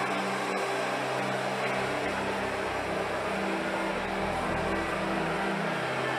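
A large congregation praying aloud all at once, a dense steady hum of many voices with no single voice standing out. Low sustained chords sound beneath it and change pitch twice.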